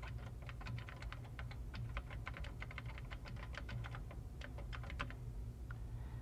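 Typing on a computer workstation keyboard: a quick, uneven run of key clicks as a sentence is typed, slowing to a few last keystrokes about five seconds in.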